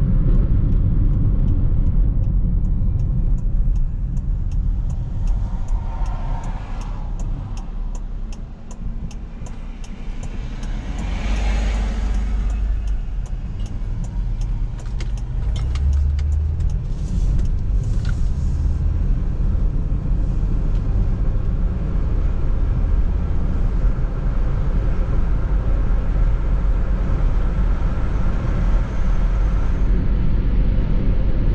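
Car interior road and engine noise while driving, with a turn signal ticking steadily through the first half. The noise eases as the car slows for an intersection, then builds again as it pulls away, and a passing vehicle swells and fades about eleven seconds in.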